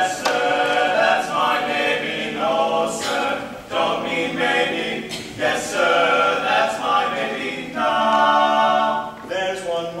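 Male barbershop quartet singing a cappella in close four-part harmony, with sustained chords between phrases.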